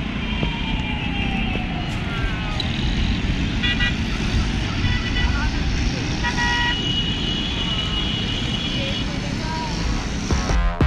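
Busy city street traffic heard from high above: a steady rumble of engines with several short car horn honks scattered through it.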